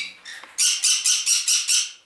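Parrot calling loudly: a call tails off at the start, then a quick run of about six squawks, roughly four a second, stops just before the end.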